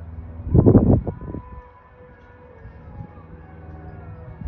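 Music with long held notes and slow glides, broken about half a second in by a loud, low burst of noise lasting about a second.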